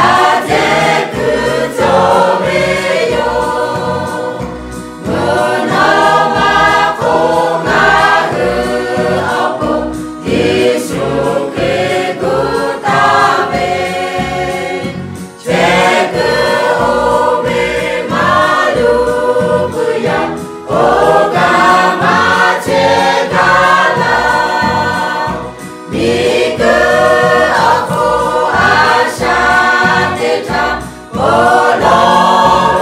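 Mixed choir of women's and men's voices singing together, in phrases of about five seconds with brief breaths between them.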